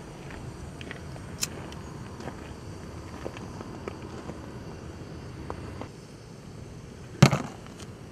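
A hand-held lighter struck, with a sharp click about a second and a half in, then a few faint ticks over a low steady outdoor background hum while the flame is held to the mesh knot.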